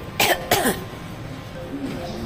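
A person coughing twice in quick succession, two short bursts about a third of a second apart.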